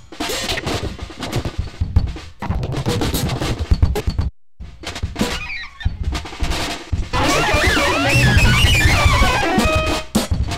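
Instrumental experimental rock: choppy, busy drum kit playing with electric guitars in stop-start bursts. The music cuts out completely for a moment just after four seconds. From about seven seconds it turns into a louder, denser wash with wavering, bending guitar lines.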